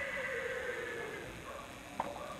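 A horse whinnying: one call that starts at the beginning and slides down in pitch over about a second.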